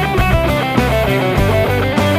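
Stratocaster-style electric guitar playing fast picked major-scale runs, one note after another, over a backing track with a sustained low bass line and drum hits.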